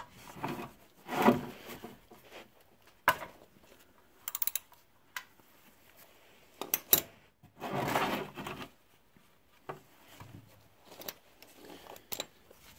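A socket wrench and tools being handled at a car's oil drain plug: scattered clicks and knocks with some rubbing, including a quick run of clicks about four seconds in.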